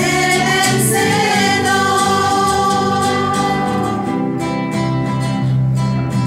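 A small group of women singing a hymn together to acoustic guitar accompaniment, holding a long sustained note through the middle of the phrase.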